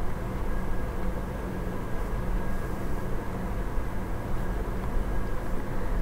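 Steady low background noise with a faint constant hum and no distinct events.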